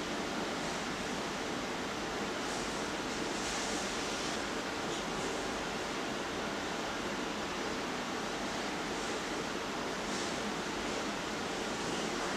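Steady rushing hiss with a faint low hum underneath, and a soft swell of higher hiss a few seconds in.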